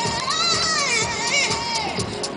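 Music with loud, high-pitched voices over it, their pitch gliding up and down.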